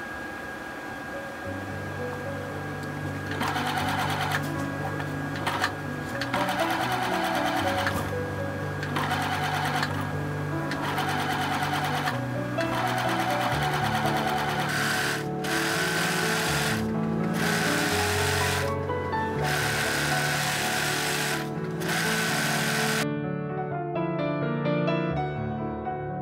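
Bernette B37 computerized sewing machine running a zigzag stitch in runs of a few seconds with short pauses between, stopping near the end. Background music plays underneath.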